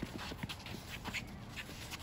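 Faint, irregular taps and thuds of basketball play on an outdoor hard court: players' footsteps and the ball, with no single loud event.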